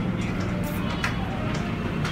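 A steady low hum, with faint voices in the background.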